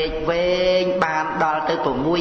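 A man's voice chanting in Khmer in the intoned style of a Buddhist dhamma sermon, drawing out two long held notes.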